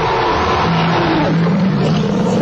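A steady rushing, engine-like sound effect with a low held tone that comes in about half a second in, from an animated TV segment intro.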